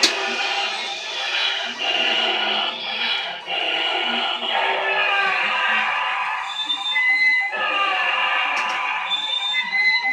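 Animatronic cryo chamber corpse Halloween prop playing its recorded soundtrack, a continuous eerie electronic mix with voice-like sounds and a few short high beeps in the second half.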